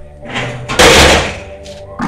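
A loud rush of noise swells up about a third of a second in, peaks for about half a second, then fades, over steady background music.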